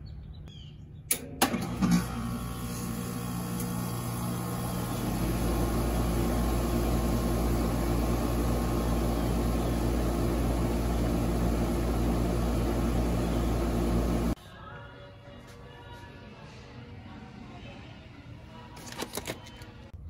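A 2.5-ton AirQuest heat pump's outdoor unit starting across the line, with no soft starter fitted yet. A clunk about a second in, then the compressor hums up, and the sound grows louder and deeper about five seconds in. It runs steadily until the sound cuts off abruptly about fourteen seconds in.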